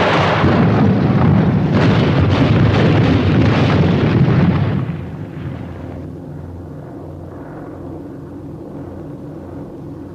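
Anti-aircraft flak explosions: a dense rumbling barrage with several sharper blasts, over the drone of aircraft engines. About five seconds in, the blasts die away, leaving the steady, throbbing engine drone of the plane.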